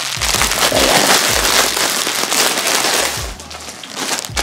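Clear plastic packaging around a pack of hair bows crinkling loudly as it is handled right at the microphone, dying down about three seconds in.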